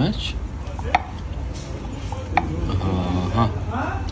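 Restaurant background noise: a steady low hum with two sharp clicks about a second and a half apart, like crockery or kitchen knocks, and faint voices near the end.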